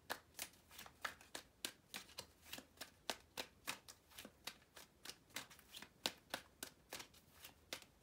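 A tarot deck being shuffled by hand: a faint, irregular run of short card clicks and slaps, several a second.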